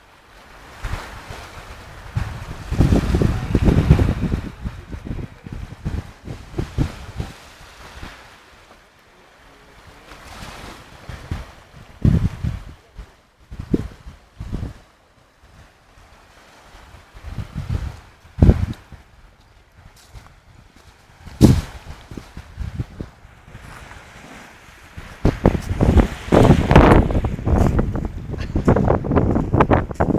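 Wind gusting over the microphone in uneven bursts, over the wash of small waves breaking on a shingle beach.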